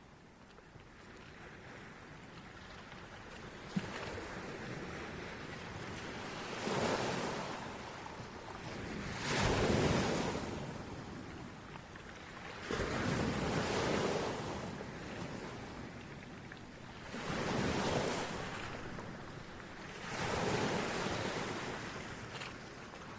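Sea surf: waves washing in and drawing back, about five swells rising and fading a few seconds apart.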